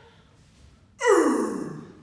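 A loud, breathy vocal sound that starts suddenly about a second in and slides down in pitch as it fades over most of a second, like a long falling sigh.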